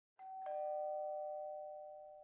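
Two-note ding-dong chime: a higher note struck, then a lower one a quarter second later, both ringing on and slowly fading.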